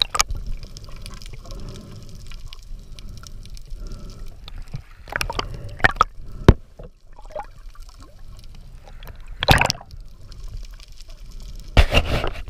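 Water sloshing and gurgling around a camera in the sea as a snorkeling diver swims, with several sudden sharp splashes, about halfway through and near the end.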